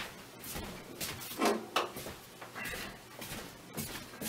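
A string of soft knocks, scrapes and rustles from someone moving about and handling small objects.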